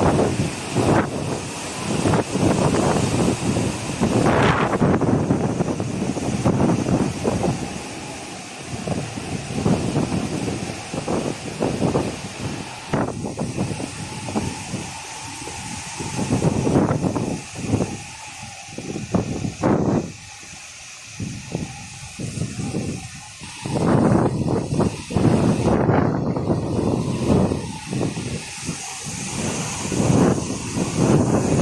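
Strong cyclone wind buffeting the microphone over breaking surf, a rushing noise that swells and drops in uneven gusts.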